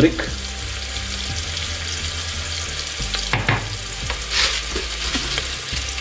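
Sliced onions and whole spices frying in ghee in an aluminium pressure cooker, a steady sizzle. A wooden spatula stirs them, with a few short scrapes a little past the middle.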